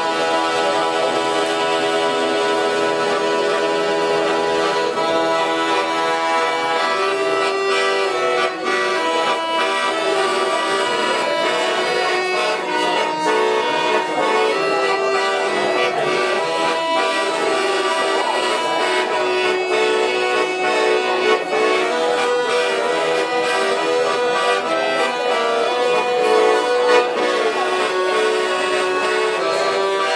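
A piano accordion playing a solo waltz: a melody of held, reedy notes over sustained chords, at an even loudness throughout.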